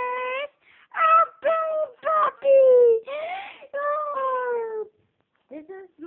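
A young girl's high voice crooning a string of drawn-out, wordless sung notes, several sliding down in pitch, with a short pause near the end.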